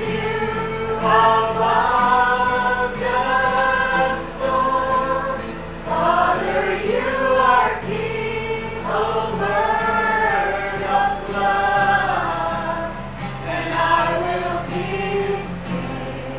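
A congregation singing a Christian worship song together, mixed women's and men's voices in phrases, over steady chords from an acoustic guitar.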